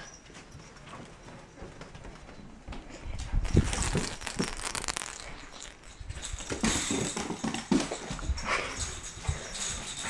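A small dog moving about on a hardwood floor, with footsteps and irregular knocks that start about three seconds in.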